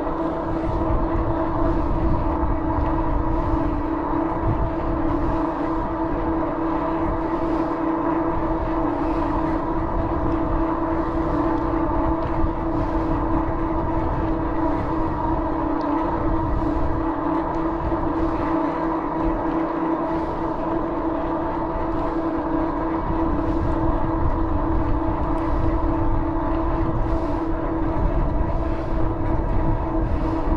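Steady whine of several held tones that never change pitch, from a bicycle riding at an even pace on smooth pavement, over a rough low rumble of wind on the microphone.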